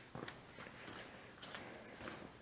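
A few faint, soft footsteps on a concrete shop floor.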